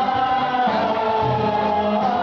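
Bosnian folk song played loud, with singing held on long notes over instrumental backing.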